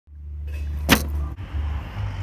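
A steady low hum with one sharp click a little under a second in.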